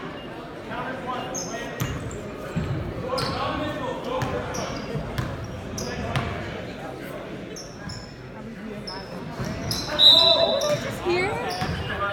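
Indoor gym basketball game: a basketball bouncing on the hardwood floor and short sharp squeaks and knocks, over spectators' chatter echoing in the hall. About ten seconds in there is a short, loud high-pitched tone.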